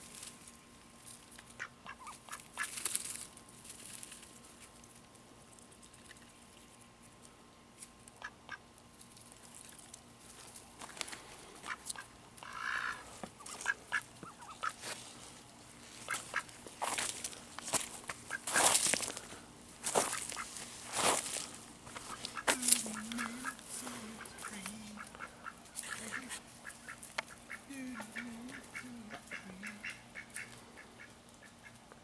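Pekin ducks dabbling and rooting with their bills in loose soil and leaf litter, a scatter of rustles and clicks, with soft low quacking in the second half.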